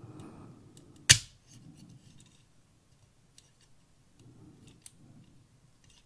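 Plastic toy X-wing's folding S-foil wings handled and moved, with one sharp snap about a second in, then a few faint clicks and soft handling rustle.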